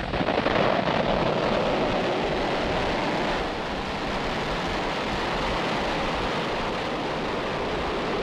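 Falcon 9 first stage's nine Merlin 1D engines at liftoff: a loud, steady rushing roar of rocket exhaust with no pitch to it. It eases slightly about three seconds in.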